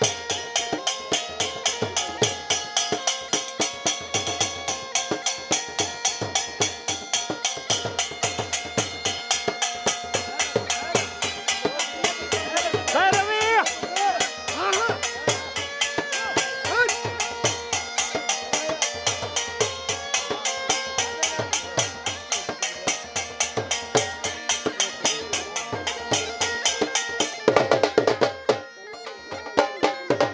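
Dhol drum beaten in a fast, steady rhythm under a bagpipe's held drone and melody. A brief loud rush of noise breaks in near the end.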